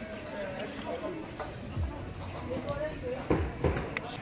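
Indistinct voices of people talking in the background, with a few dull thumps near the end.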